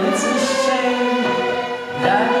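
A large children's violin ensemble playing held notes together, with singing; the sound thins briefly near the end at a break between phrases.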